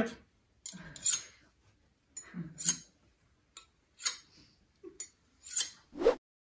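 Steel blade of a Wüsthof Classic 20 cm chef's knife drawn across a rough beach stone in about five short, separate scraping strokes, sharpening the second side of the edge.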